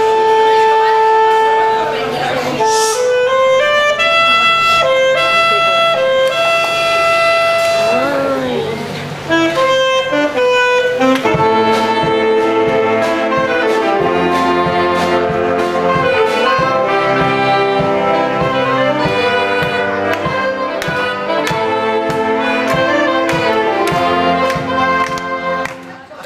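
Saxophone ensemble playing a piece together: held chords at first, a thinner passage with a single melody line in the middle, then the whole group comes back in about eleven seconds in with a steady beat.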